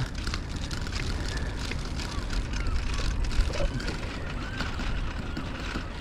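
Wind on the microphone and tyre noise from a bicycle rolling along a paved path: a steady low rumble with faint ticks.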